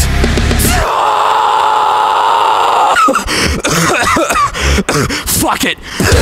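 Heavy metal band music. About a second in, the bass and drums drop out, leaving a held mid-pitched tone. From about three seconds it turns to choppy stop-start hits with sudden short gaps, and the full band comes back at the very end.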